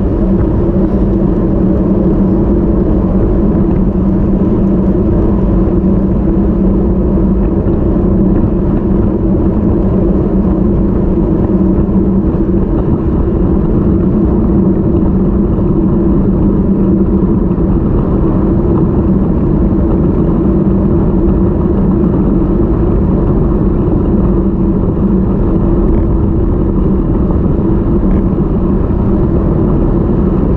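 Steady wind rush over the microphone of a bike-mounted action camera, with road-bike tyre hum on asphalt at racing speed; a steady low hum runs under the rush throughout.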